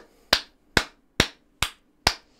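One person's slow hand clapping: four single, evenly spaced claps, about two a second.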